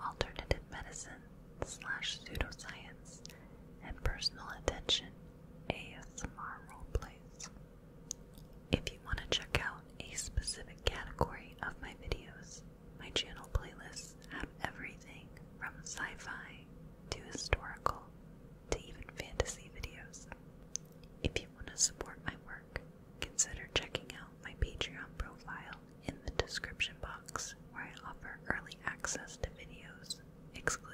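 Close-miked whispering in short phrases, with many sharp mouth clicks.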